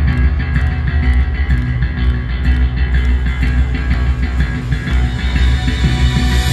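Live rock band playing, electric guitar over a heavy, steady bass, heard from the audience in an arena.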